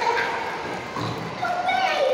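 A high-pitched voice, amplified over a hall's sound system, holding notes and sliding up and down in pitch in short phrases.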